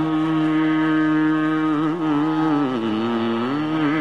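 A singer holds one long vowel of a Sanskrit devotional hymn in Carnatic style over a steady drone. The note holds level for about two seconds, then glides down and back up in ornamented bends.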